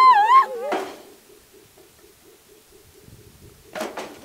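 A woman wailing in grief, a high held cry that wavers and falls away within the first half second. A short noisy burst follows, then a much quieter stretch with a faint rapid pulsing, and a sharp burst near the end.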